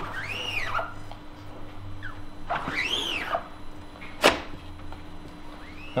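Squeegee blade squeaking as it is drawn across an inked screen-printing screen, twice, each squeak rising and then falling in pitch over under a second. A single sharp click follows about four seconds in.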